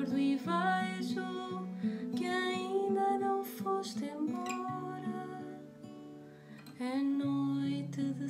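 A woman singing over an acoustic guitar, with long held notes. About five seconds in the voice pauses for a couple of seconds, leaving the guitar alone, and then the singing comes back.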